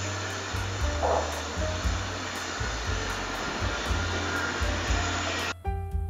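A steady rushing machine noise over background music with a moving bass line; the rushing cuts off suddenly near the end, leaving only piano music.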